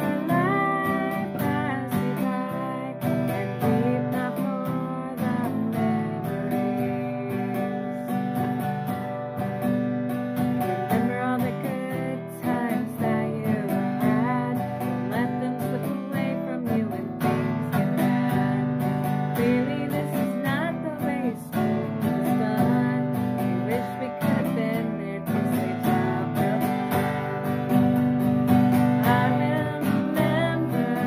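A woman singing a song with strummed acoustic guitar accompaniment.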